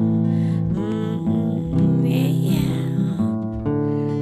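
Guitar being strummed, its chords ringing steadily, with a voice singing softly over it in places.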